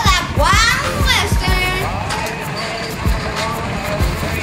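Music with a steady drum beat, about three beats a second, under a voice that glides sharply up and down in pitch.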